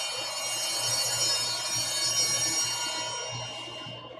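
Altar bells ringing at the elevation of the chalice during the consecration. The ringing slowly fades, with another softer shake near the end.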